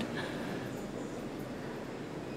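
A steady, even background noise with no distinct events, like a faint rumble and hiss.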